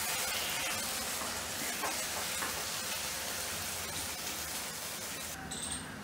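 Paneer bhurji frying in a nonstick kadai over a high gas flame while being stirred with a spatula: a steady sizzling hiss that thins out near the end.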